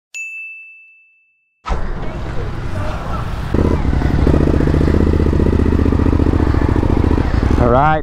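A single chime-like ding that rings and fades over about a second. After a short silence a Suzuki V-Strom motorcycle engine cuts in, running at idle with an even pulse, and gets louder about three and a half seconds in.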